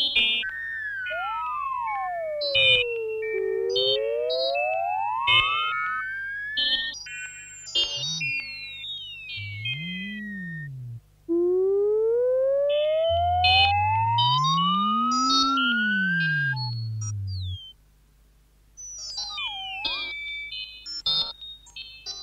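1950s electronic tape music of pure electronic tones: long smooth glides that sweep down and back up in pitch, over a low steady hum and scattered short high beeps. Low tones swell up and down in slow arches, and near the end the sound drops out for about a second before more glides and beeps return.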